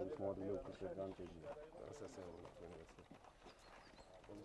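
Faint voices talking, fading by the end; mostly a single voice at first, then softer, less distinct talk.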